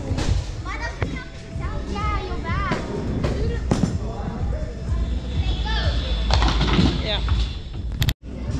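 Bowling ball rolling down a wooden lane with a low rumble, rising to a louder clatter near the end as it reaches the pin end. Background music and voices in the bowling alley run underneath.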